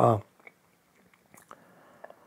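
A man's short hesitant "a," then a pause with a few faint mouth clicks and lip smacks close to the microphone.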